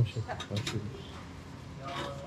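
Low, quiet murmured speech from a man's voice, with brief handling noises.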